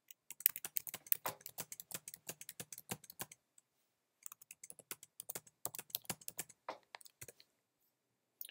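Typing on a computer keyboard: a quick run of keystrokes for about three seconds, a pause of about a second, then a second run of keystrokes.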